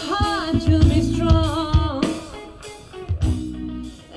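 A live band playing, with electric guitar and singing over bass and a kick drum beating about twice a second. It is amplified through an Electro-Voice X-Line Advance X2 line-array PA, and the music fades down near the end.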